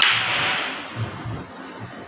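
Pool break shot: a sharp, ringing crack of the cue ball hitting the racked balls at the very start, then the balls scattering across the table, with a few soft knocks about a second in.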